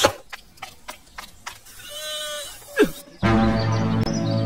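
A few sharp clicks, then a wavering, bleat-like animal call lasting about a second that ends in a quick falling glide; background music with a steady low beat comes back in about three seconds in.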